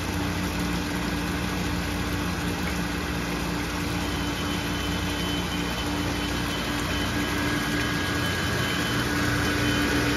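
Water pouring from overhead pipes into a plastics extrusion cooling tank, a steady splashing over the steady hum of the tank's electric circulating pump. The sound grows a little louder near the end.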